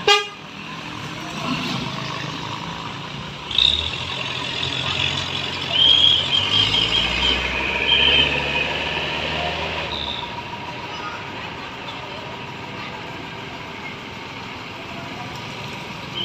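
A heavy Mercedes-Benz tow truck's diesel engine runs and pulls away, hauling a wrecked truck. Over the engine come a series of short, high-pitched toots between about four and eight seconds in, with a sharp knock at the very start.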